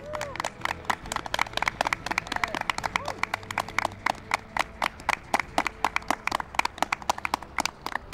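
A small group of people clapping: quick, irregular claps that keep up steadily throughout.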